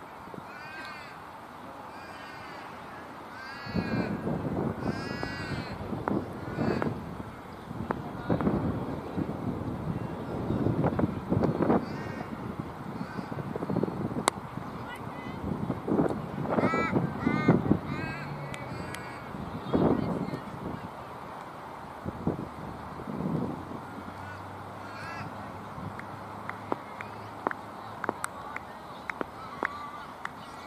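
A crow cawing in two runs of repeated calls, over irregular low rumbling bursts that are the loudest sound. A few sharp clicks come near the end.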